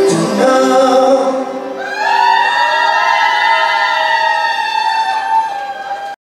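A male lead singer's live vocal over pop-rock band music, ending the song on one long held note that starts about two seconds in and carries almost to the end.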